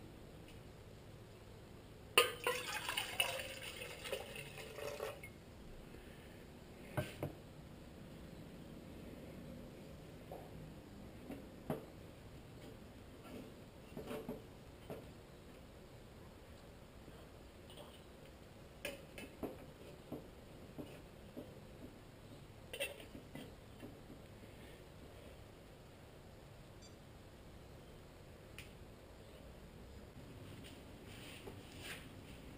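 Water poured into an aluminium percolator pot for about three seconds, followed by scattered light knocks and clinks as the metal pot and its lid are handled and set on a small folding stove.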